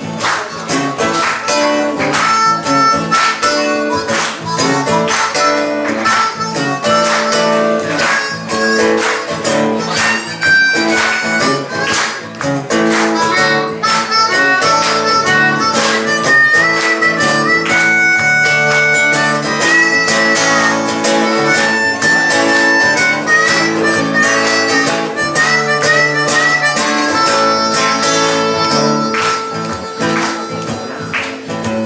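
Harmonica playing a melody of held notes over strummed acoustic guitar, with a long held harmonica note near the end.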